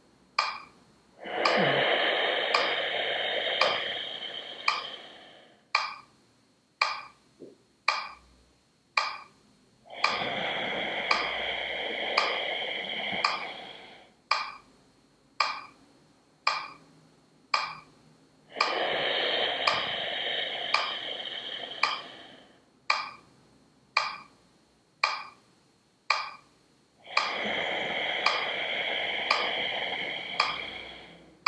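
Slow breathing in a 4-4 box-breathing rhythm: four long breaths of about four seconds each, inhales and exhales in turn, with a held pause of about four seconds between them. Throughout, a metronome ticks about once a second to keep the count.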